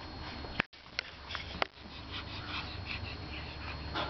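Small long-haired dog sniffing in quick short puffs, about three or four a second from about halfway in, with a few light clicks before that.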